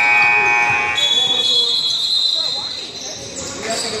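Basketball game on a hardwood gym floor: a ball dribbling in low repeated thuds, with a high squeal for about the first second, then a steady high tone lasting almost three seconds.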